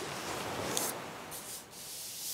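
Thin Bible pages rustling as a page is turned, with a short crisp crackle of paper about a second in. Behind it is a soft wash of recorded ocean waves.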